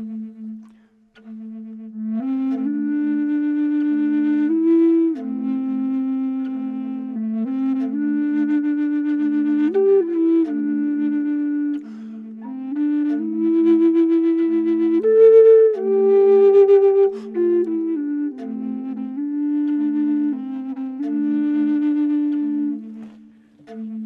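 Two Native American flutes in the same key. A looped recording of one flute's bottom note repeats on and off underneath, and from about two seconds in a second flute plays a slow melody of held notes over it. The two sound in tune together, the sign of a matched pair.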